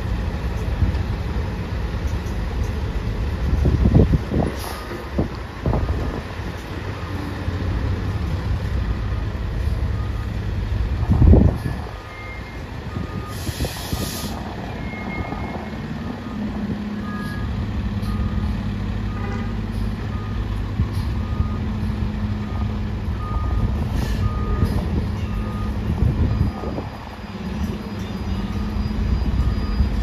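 A diesel fire engine backing up: its backup alarm beeps about once a second over the engine running, with several louder low bursts from the engine and a short air-brake hiss about halfway through.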